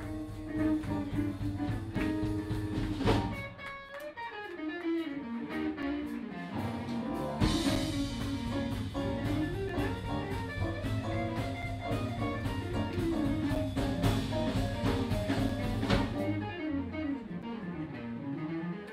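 Live blues band: an electric guitar plays lead lines with bent, sliding notes over bass and a drum kit. About four seconds in the low end thins out, and it comes back in with a cymbal hit a few seconds later.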